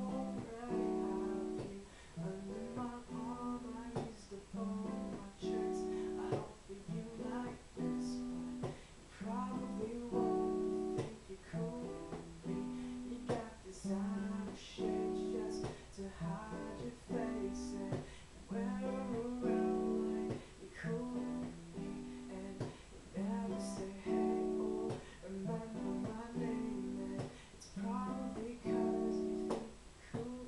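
Acoustic guitar played softly in a picked-and-strummed chord pattern, with a male voice singing quietly over it.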